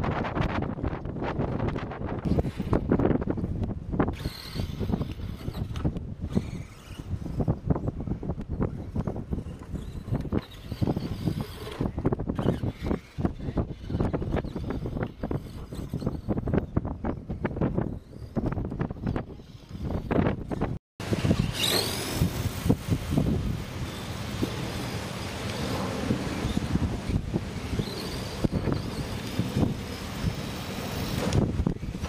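Wind buffeting the microphone in uneven gusts, with scattered small clicks and knocks. The sound drops out for a moment about two-thirds of the way through, then a steadier hiss follows.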